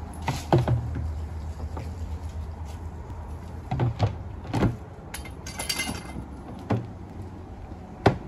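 Plastic lid being pressed onto a plastic bin and its locking clips snapped shut: a handful of hollow plastic knocks and clunks, with a short rattling scrape just before six seconds.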